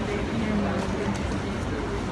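A person's voice in two short stretches, over steady outdoor background noise.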